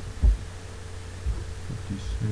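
A steady low electrical hum with a few dull low thumps, the loudest a fraction of a second in.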